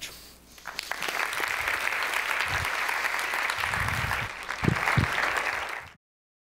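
Audience applauding, swelling in about a second in and holding steady, with a couple of low thumps near the end, then cut off abruptly.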